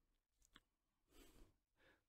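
Near silence: a pause in speech, with a faint breath drawn about a second in and again just before speaking resumes.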